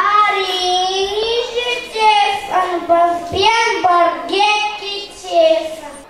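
A young boy singing solo into a microphone, in long held notes with no accompaniment.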